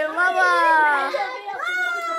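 Young children's high-pitched voices, talking and playing, with long drawn-out vowels that slowly fall in pitch, twice.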